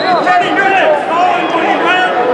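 People shouting over crowd chatter, several voices overlapping, loudest in the first second.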